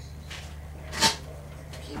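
A single sharp click or knock about a second in, over a steady low hum and faint background voices.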